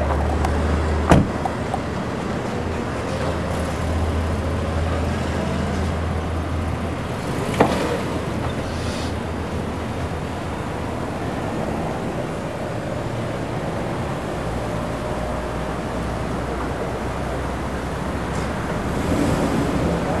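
Steady street and car noise with a low engine rumble, broken by two sharp thuds of Mercedes-Benz sedan doors being shut: one about a second in and one about six seconds later.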